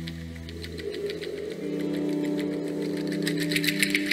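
Improvised ambient music: sustained droning tones that shift to a new pitch about a second and a half in, over a fast, even ticking percussion of about six ticks a second that grows louder near the end.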